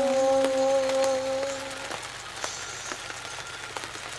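A dog howling: one long, steady note that stops about two seconds in.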